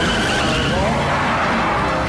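Car tyres squealing as a wheel spins in a smoky burnout, the squeal building up about half a second in.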